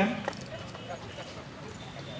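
A man's voice breaks off at the start, followed by a pause filled with faint background noise, a few soft clicks and faint distant voices.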